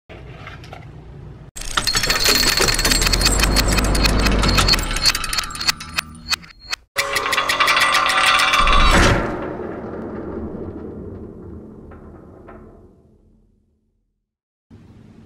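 Produced intro sound effects: a dense run of rapid mechanical clicking and rattling over a low rumble, a brief break, then a final hit that rings out and fades away over about four seconds.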